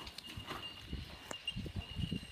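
Horse's hooves thudding on soft sand arena footing as it is ridden past, a few dull irregular beats.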